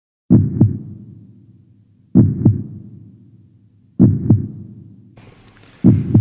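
Heartbeat sound effect: deep lub-dub double thumps, each pair fading out, repeating about every two seconds, four times. Faint room noise comes in about five seconds in.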